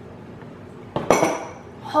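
A drinking glass clinks sharply once, about a second in, with a short ring, as it is set down after a sip. Before the clink there is only quiet room sound.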